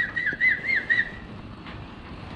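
A person whistling a warbling call: four quick rising-and-falling notes that stop a little over a second in.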